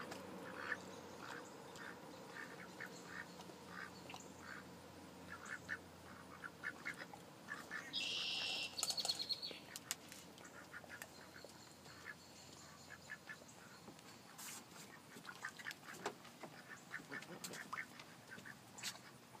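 White domestic ducks quacking quietly in short, scattered calls. A brief, louder high-pitched call sounds about eight seconds in.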